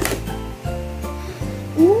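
Background music with a steady bass beat, with a short sharp click at the very start.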